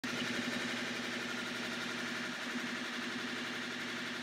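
Electric prime-mover motor turning a 3D-printed plastic magnet-and-coil generator rig at a steady speed, around 220 rpm. It makes an even mechanical hum with a constant low tone.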